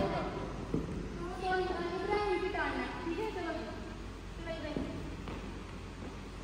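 People talking indistinctly, a woman's voice most prominent, with two light knocks, one about a second in and one near the end.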